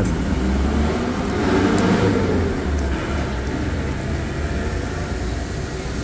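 Road traffic rumbling steadily, with a vehicle passing close by that swells to a peak about two seconds in and then fades.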